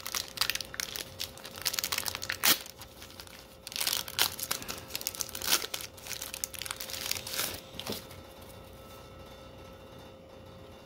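Paper wrapper of a 1990 Score baseball card pack being torn open and crinkled by gloved hands, with a sharp crack about two and a half seconds in. The rustling dies down for the last two seconds.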